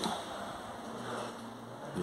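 Faint room noise with a short soft click right at the start; the audio unit just switched on is not yet playing.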